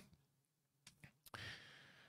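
Near silence, with a few faint clicks and a short, quiet breath a little past halfway.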